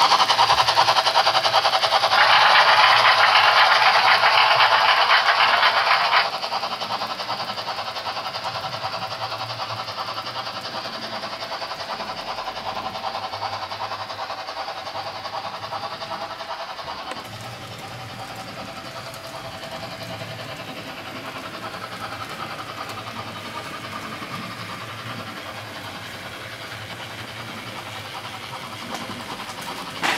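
Trix model class 50 steam locomotive with a DCC sound decoder giving its steam sounds while it and its coaches run along the model track. Loud for the first six seconds, then dropping off suddenly, and lower again from about seventeen seconds.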